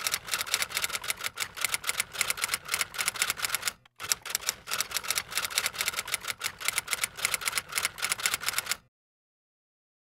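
Rapid typing clatter of keys, many strokes a second, in two runs with a brief break about four seconds in; it stops about nine seconds in.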